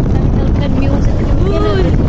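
Steady low rumble of wind buffeting the microphone and the vehicle running, from a car moving along a road. Near the end a voice gives one short call that rises and falls in pitch.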